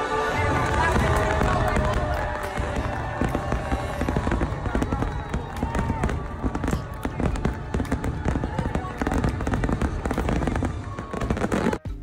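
Aerial fireworks bursting in quick, irregular succession, many sharp bangs over music, cutting off abruptly just before the end.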